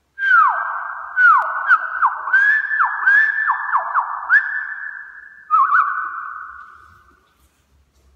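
A man whistling bird-like calls through a cupped hand: a run of quick whistles that slide down in pitch, then a held note about five and a half seconds in. Each one rings on in the echo of an empty room.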